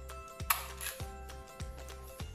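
Background music with a steady beat. About half a second in, a two-hole paper punch presses through a cardboard number with one short, sharp click.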